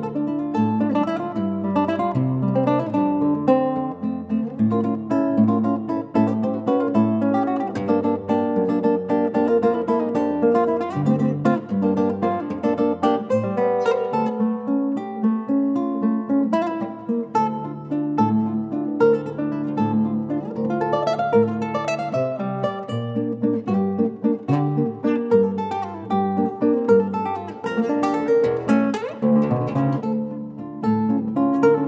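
Solo classical nylon-string guitar played fingerstyle: a plucked melody over a low bass line, with notes following one another without a break.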